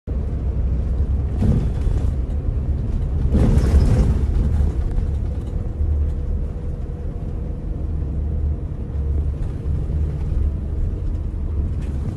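Inside a moving coach bus: a steady low engine and road rumble. Two short, louder noises come about a second and a half and three and a half seconds in.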